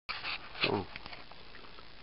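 Background noise as the recording cuts in, with one short vocal sound that falls steeply in pitch a little over half a second in.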